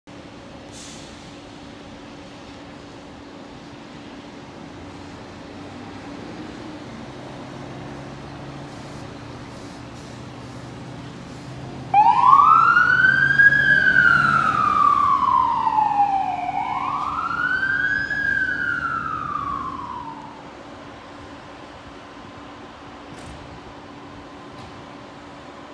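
Fire engine responding to a call: its engine rumbles as it pulls out, then the siren starts suddenly about halfway through. The siren wails through two slow rise-and-fall sweeps and stops a few seconds before the end.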